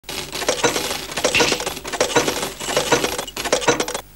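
Metal coins clinking and rattling in a quick, uneven run of sharp chinks, which stops suddenly at the end.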